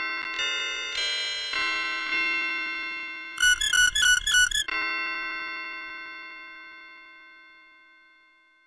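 Logo jingle of bell-like electronic notes struck about twice a second and building into a chord. For about a second in the middle comes a loud, fast pulsing ring like an alarm bell, after which the chord holds and slowly fades away.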